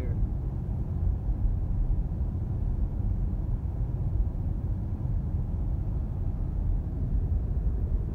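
Steady low road and tyre rumble heard inside the cabin of a Tesla Model S 85D cruising at 60 mph.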